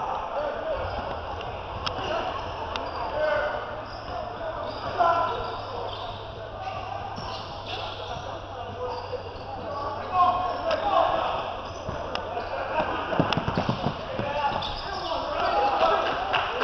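Basketball bouncing on a hardwood gym court, with scattered sharp knocks from play and indistinct shouts and chatter from players and spectators echoing in a large gym; a steady low hum runs underneath for most of it.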